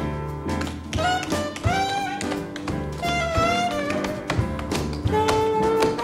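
Tap shoes striking the stage in quick rhythms over a live jazz band, with a saxophone playing sliding phrases and then a long held note near the end, over upright bass and drums.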